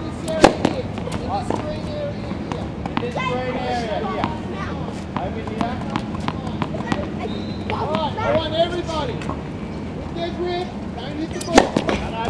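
Tennis racket striking the ball on a serve, a sharp crack about half a second in, and again near the end. Voices carry in the background throughout.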